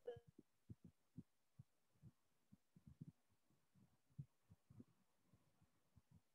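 Near silence, with faint, irregular low thumps scattered through it.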